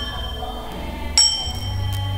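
Instrumental music from a traditional stage ensemble, without singing: a low steady bass, with a bright metallic bell-like strike a little over a second in that rings on.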